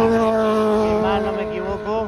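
A motor vehicle engine running with a steady hum that eases off near the end, with a few short voice sounds over it.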